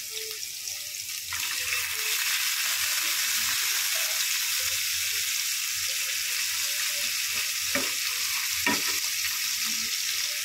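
Hot oil sizzling steadily in a frying pan as food fries, growing louder a little over a second in. Two short sharp clicks come near the end.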